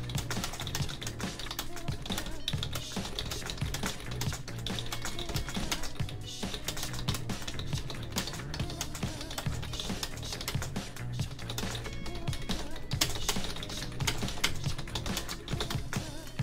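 Typing on a computer keyboard, a quick run of key clicks, over background music with a steady bass line.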